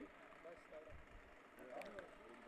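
Near silence, with faint distant voices talking.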